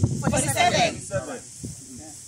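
Voices of a group of people talking and exclaiming, with a brief hissing sound about half a second in; after about a second it goes quieter.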